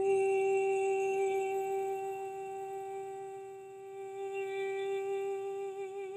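A woman's unaccompanied voice holds one long sung note, the closing note of the song. The note is steady at first, fades a little midway, then swells again and turns to vibrato near the end.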